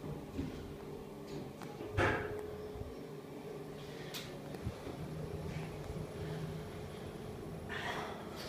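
Kone EcoDisc gearless elevator car travelling up one floor, heard from inside the car: a low steady hum of the ride, with a knock about two seconds in and a few light clicks later.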